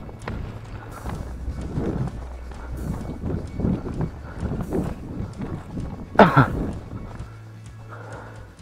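Footsteps crunching through dry grass and brushing through bare willow twigs at a steady walk, with one loud, short sound falling in pitch about six seconds in.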